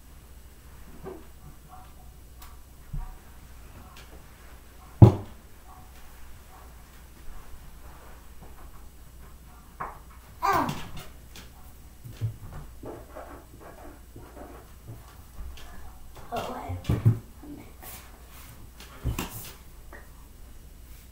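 Sporadic knocks and bumps from children moving at their desks, the loudest a single sharp knock about five seconds in, with a few brief child's vocal sounds later.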